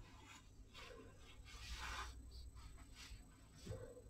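Faint scratching and rustling of a watercolour brush being worked in the paint of a palette, the longest stroke about two seconds in, with a few small taps near the end.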